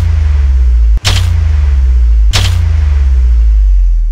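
Edited cinematic boom hits: three sharp cracks, at the start, about a second in and a little past two seconds, each followed by a deep held bass rumble. The last one fades away near the end.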